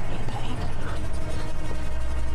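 A loud, steady low drone.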